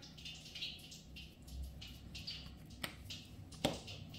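Faint, quick shakes of a spice shaker sprinkling paprika, with two sharp clicks in the last second and a half.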